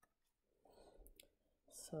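Near silence with a couple of faint clicks and a faint low murmur, then a breath drawn in near the end.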